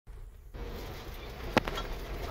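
Isuzu FRR truck's diesel engine running with a steady low drone, heard from inside the cab while driving. One sharp knock sounds about one and a half seconds in.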